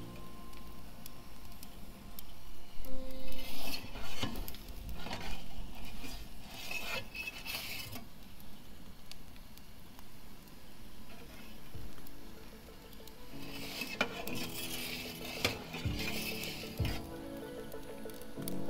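Metal clinks and scrapes from a perforated metal pizza peel working at the oven's stone and metal mouth, coming in two spells, around the first few seconds and again near the end. Background music plays throughout.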